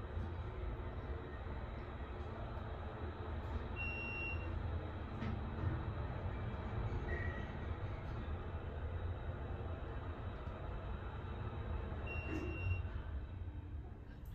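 ThyssenKrupp hydraulic elevator car travelling down, a steady low rumble of the ride heard from inside the cab. Two short high electronic beeps sound, one about four seconds in and one near the end, as the car passes the floors.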